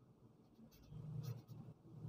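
Pen writing on lined notebook paper: faint, irregular scratching strokes starting about a second in.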